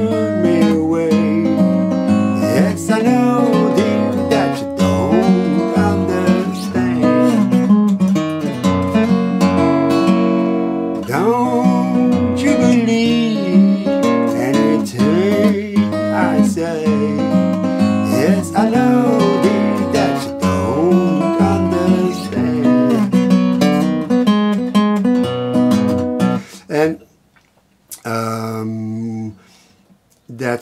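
A 1986 Greven FX steel-string acoustic guitar, capoed at the second fret, fingerpicking a blues in A at full tempo. The playing stops about 26 seconds in, and a single chord rings briefly near the end.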